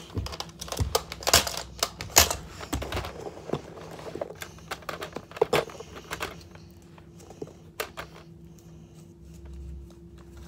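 Plastic clicks and knocks of a toy blaster and its parts being handled, busy for the first several seconds and sparser after.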